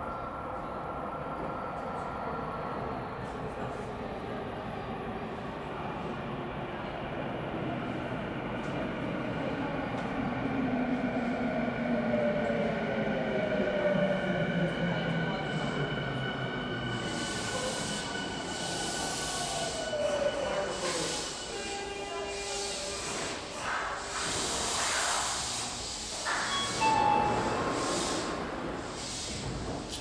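Yokohama Minatomirai Railway Y500-series electric train pulling into a subway platform: its motor whine falls steadily in pitch as it slows. Near the end comes hissing and high squealing from the brakes and wheels as it comes to a stop.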